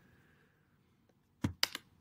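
A few short keystrokes on a computer keyboard about one and a half seconds in, after a near-silent start: a search being typed and entered.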